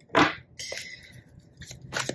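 Tarot cards being handled: a short, loud rustle at the start, then quieter shuffling with a few light clicks.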